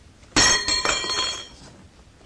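Crockery crashing and breaking: one sudden smash about a third of a second in, followed by clinking, ringing pieces that die away after about a second.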